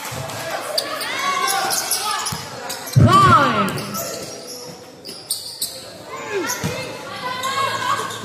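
Basketball game play: the ball bouncing on the court amid repeated shouts from players and spectators. The loudest moment is a strong shout with a thump about three seconds in.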